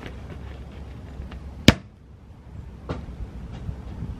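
A single sharp knock about two seconds in, with a fainter tap about a second later, over a steady low outdoor background rumble.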